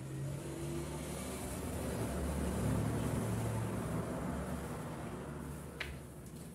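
Low engine rumble, like a motor vehicle, that swells around the middle and then fades, with a single sharp click near the end.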